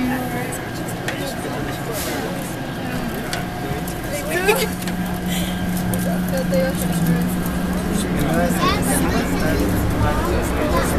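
Automated airport people-mover train running between stations, heard from inside a crowded car: a steady low motor hum that grows stronger about halfway through, under passengers' voices.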